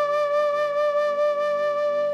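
Background music: a flute holding one long, steady note over lower sustained tones.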